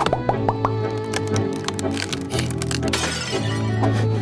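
Cartoon background music over a run of quick, sharp chopping knocks from an axe hacking at a tree trunk. About three seconds in comes a noisy crash as the tree splinters and falls.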